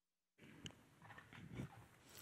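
Dead silence for a moment, then faint room sound in a church hall with a few soft knocks and rustles as people move about the stage.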